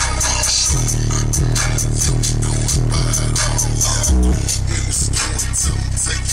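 Bass-heavy electronic music played loud through a van's car audio system, its 15-inch subwoofer putting out deep sustained bass notes that come in stronger about a second in, heard inside the cabin.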